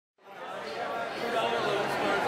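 A murmur of chattering voices fading in from silence at the opening of a song track, growing steadily louder.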